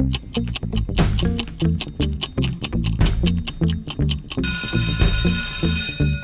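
Quiz countdown timer sound effect: fast clock ticking, about five ticks a second, over a low repeating beat. About four and a half seconds in it gives way to a steady alarm-clock-like ring as the time runs out.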